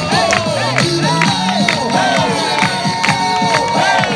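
Crowd cheering and whooping over loud pop dance music with a steady beat.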